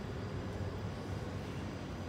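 Steady low hum and rumble of a stationary electric commuter train waiting to depart, with general station ambience.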